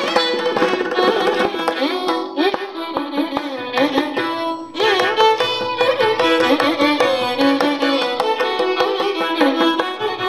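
Carnatic violin ensemble playing a melody with sliding, ornamented notes, accompanied by mridangam strokes. The music eases briefly just before the middle, then picks up again.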